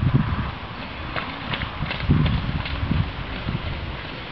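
Horse's hoofbeats at a trot on sand arena footing.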